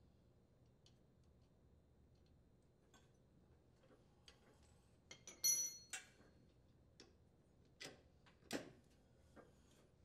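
Faint, sparse metallic clicks and clinks of a wrench and nut hardware on a riding mower's steering link. The loudest is a single ringing clink about halfway through, followed by a few light taps.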